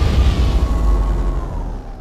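Deep cinematic rumble of a logo-intro sound effect, the tail of a boom, slowly fading out with a faint high tone sliding gently downward.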